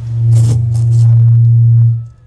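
Conch shell trumpet blown in one long, steady low note, with a breathy burst near its start, cutting off sharply after about two seconds.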